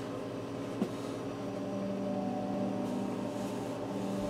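Steady electrical hum of a running household appliance, with a lower hum tone coming in about a second and a half in, and a faint click near one second.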